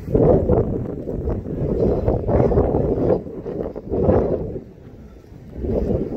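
Wind buffeting the microphone: a loud, uneven low rumble that rises and falls, easing off about four and a half seconds in and building again near the end.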